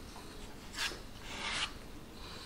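Metal filling knife scraping and spreading two-part wood filler paste across a wooden board. There are two short scrapes, one about a second in and another near the end.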